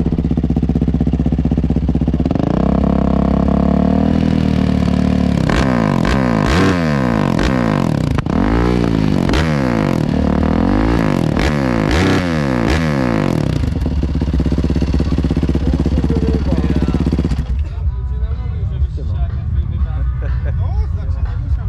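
Yamaha 450 single-cylinder four-stroke supermoto, bored out to 500 cc with aftermarket exhaust, intake and ECU map, idling and then revved in a string of about eight sharp throttle blips, each rising and falling quickly, before settling back to idle.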